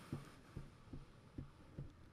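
Very quiet room with five faint, evenly spaced low thumps, roughly two to three a second.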